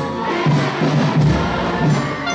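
Brass band music with low notes repeating in an even rhythm.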